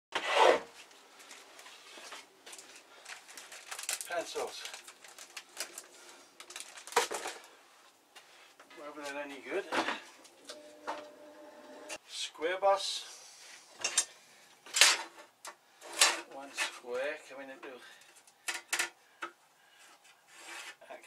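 Scattered knocks and clatter of objects being picked up and set down on a workshop bench, with a man muttering a few words in between.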